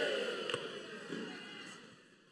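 Low hall room tone as a man's amplified voice dies away, with one faint click about half a second in.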